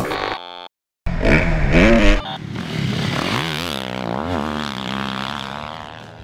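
A brief glitchy electronic sound effect at the very start. Then, after a short gap, a 2021 Yamaha YZ450F's 449cc four-stroke engine revs hard on a motocross track, its pitch rising and falling again and again with the throttle, and it fades a little near the end.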